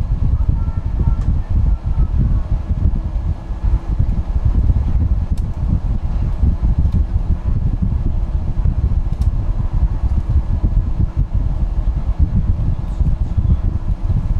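Steady low rumble of a moving bus, engine and tyres on the road, with a faint steady whine and a few light rattles.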